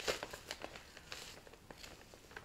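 Faint rustling and crinkling of stiff cross-stitch fabric being handled, a scatter of small crackles.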